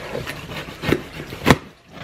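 Cardboard shipping box being torn open by hand: scraping and ripping of the flaps, with sharp rips about a second in and, loudest, shortly before the end.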